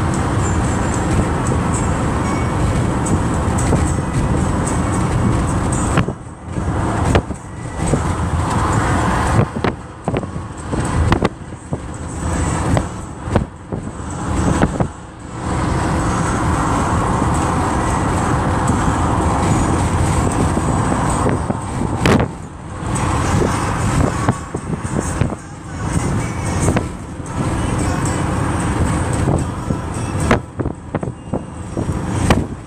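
Steady road and engine noise inside a moving car's cabin. Twice the sound keeps dropping away and cutting back in for several seconds: about six seconds in, and again past the middle.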